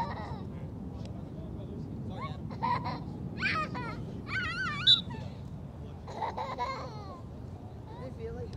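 Distant voices calling and talking across an open field, with a high, wavering shout about four to five seconds in, over a steady low outdoor rumble.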